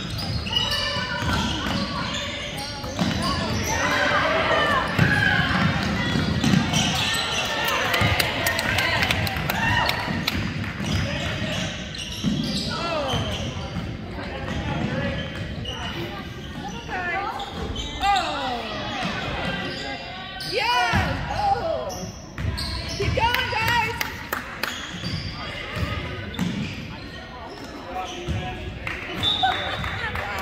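Basketball being dribbled on a gym's hardwood floor, with voices of players and spectators calling out and echoing in the hall. A short, high whistle sounds near the end.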